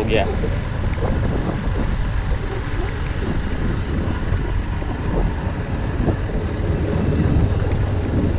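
Suzuki GD 110S motorcycle's small single-cylinder four-stroke engine running at a steady cruise on a dirt track, mixed with steady wind and road noise.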